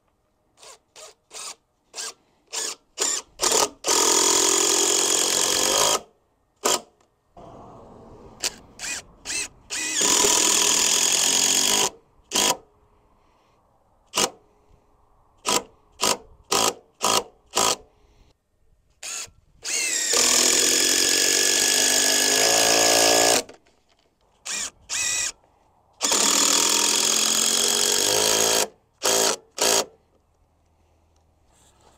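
Cordless DeWalt drill driving long screws down into wooden timbers. Quick trigger blips alternate with four sustained runs of about two seconds each, and the motor's pitch drops during each run as the screw bites into the wood.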